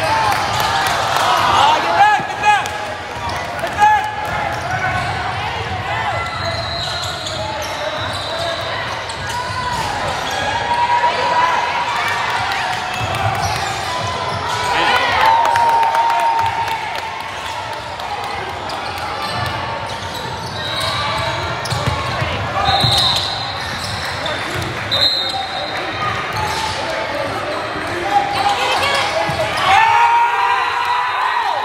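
Basketball game in a large gym: a basketball bouncing on the hardwood court, with indistinct voices and shouts from players and spectators echoing through the hall.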